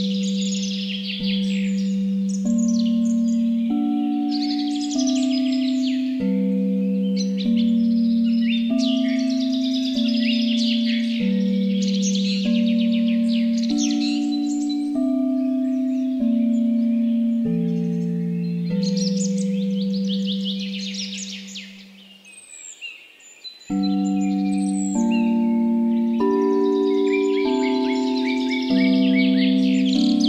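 Tibetan singing bowls struck in a slow sequence, a new ringing tone about every second and a bit, stepping between different pitches and overlapping as each rings on. Birdsong chirps densely above them. About two-thirds of the way through, the bowls and birds die away for a short lull, then the strikes resume.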